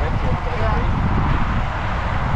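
Wind buffeting an action camera's microphone on a moving bicycle, a steady rush with a heavy low rumble. Faint voices of nearby riders come through in the first half second.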